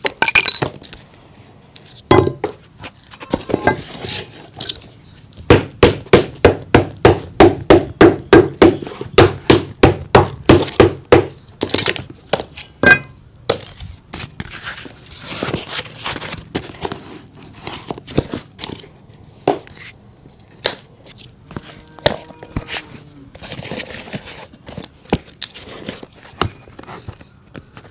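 Cobbler working a leather shoe by hand: a steady run of sharp knocks, about three a second, for several seconds, then scattered softer knocks and brush strokes scrubbing the shoe.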